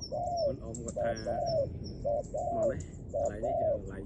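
Spotted dove cooing: repeated phrases of short, arching coos, one after another, falling silent just before the end. Faint high chirps sound above the coos.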